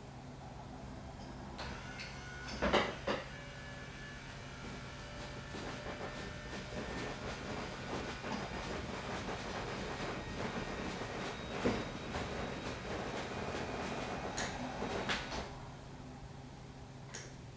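A couple of sharp clicks about three seconds in as the servo button pusher pivots and presses the bed remote. Then the hospital bed's electric motor runs steadily for about ten seconds, raising the head section, with a few knocks along the way.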